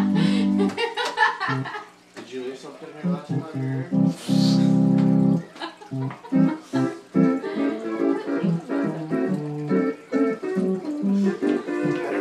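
Home console electronic organ played by hand: a held chord that stops under a second in, a run of short, separate notes, another chord held for about a second and a half near the middle, then quick chords and notes again.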